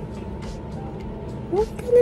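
Steady low background hum, with a woman's voice beginning near the end.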